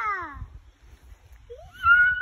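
Rope swing creaking and squeaking where it hangs from the tree branch, in time with the swing's arcs: a falling squeak at the start, then a short rising squeak and a long level squeak near the end.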